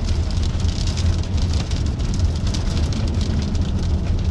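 Storm inflow wind buffeting the microphone: a steady low rumble with a fluttering hiss over it.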